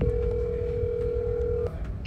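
Telephone ringback tone on a call: one steady tone lasting a little under two seconds that cuts off sharply, over a low background rumble. It is the line ringing at the other end before the call is answered.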